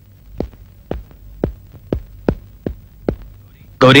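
Footsteps of a man in shoes walking briskly on hard ground: about seven sharp steps, roughly two a second, over a faint low hum. A voice calls out loudly near the end.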